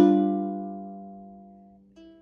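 A G7 chord strummed once on a ukulele, ringing out and fading away over nearly two seconds. A second, quieter strum comes in right at the end.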